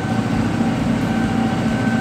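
Tractor engine running steadily, heard from inside the cab, with a steady high-pitched whine over the low engine note.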